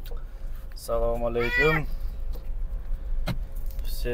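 A man's voice with a drawn-out rising and falling intonation about a second in, over the steady low hum of a car cabin, with a single sharp click near the end.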